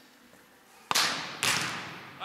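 A volleyball being struck twice, about half a second apart: two sharp slaps with ringing echo, as in a large hall.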